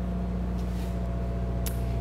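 A steady low machine hum with a faint thin higher tone above it, even in level throughout.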